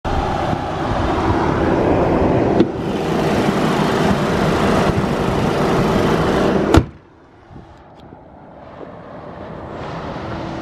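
Audi A4's TFSI turbocharged four-cylinder petrol engine, fitted with an open cone air filter, idling steadily with the bonnet open, with a small click about two and a half seconds in. Near seven seconds a sharp slam, the bonnet shutting, after which the engine is much quieter.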